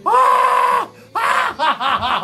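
A man screaming in pain as hot wax is pulled off his chest hair: one long, held scream for most of a second, then a run of short, broken cries.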